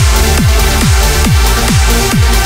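Uplifting trance music at about 138 beats per minute: a steady four-on-the-floor kick drum, each hit dropping in pitch, under sustained synth chords.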